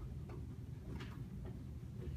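Quiet room hum with a few faint, scattered clicks and ticks.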